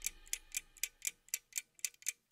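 Faint, steady ticking like a clock, about four ticks a second.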